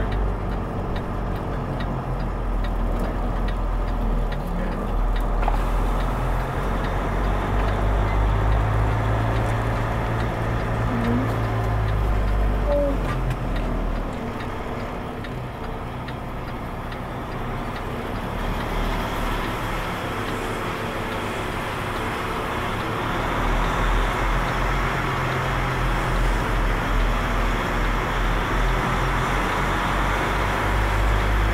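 Semi truck's diesel engine running at low speed, heard from inside the cab as the rig creeps forward: a steady low drone that eases off about halfway through and picks up again near the end.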